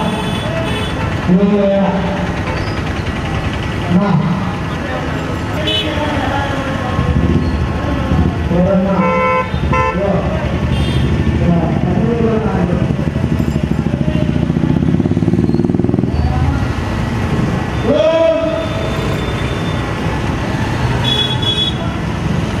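Street crowd noise: people's voices and shouts over running vehicle engines, with vehicle horns tooting in short blasts around the middle and near the end.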